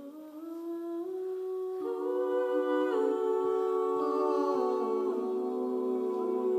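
A small mixed group of voices humming sustained chords without words, unaccompanied, swelling over the first two seconds and then holding, with the chord shifting every second or so.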